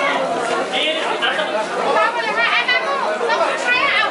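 Several voices talking over one another: a group chatting.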